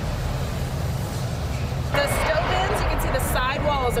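Steady low hum and hiss of a large aircraft-assembly hall for about two seconds, then a woman starts talking over it.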